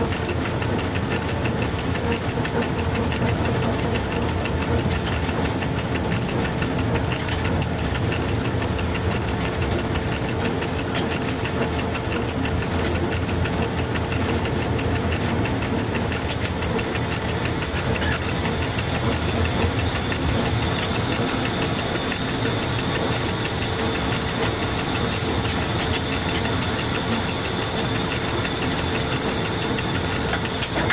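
Cab noise of an FS E.636 electric locomotive running along the line: a steady mix of traction-motor drive and wheels on the rails, with a constant hum and fine rattling.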